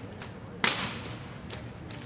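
One sharp crack of drill rifles being slapped by hand during a manual-of-arms movement, about two-thirds of a second in, followed by a couple of faint clicks of rifle handling.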